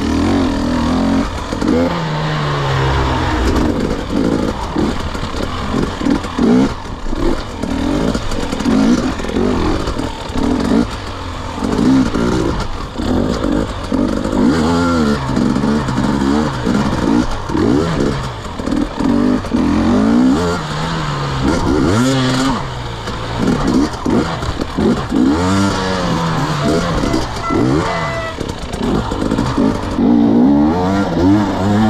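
KTM 250 EXC two-stroke enduro motorcycle engine, ridden hard over rough dirt, with the revs rising and falling over and over as the throttle is worked on and off every second or two.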